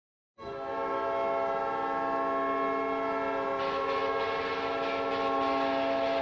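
Hockey arena goal horn, a deep air horn, sounding one long steady multi-tone blast; a hiss of noise joins about halfway through.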